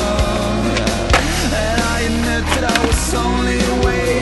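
Skateboard wheels rolling on concrete, with a few sharp board clacks, under a rock music soundtrack.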